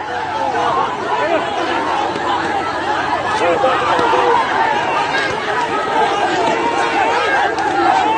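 A crowd of many people shouting and calling out over each other at once, a dense, continuous tangle of voices.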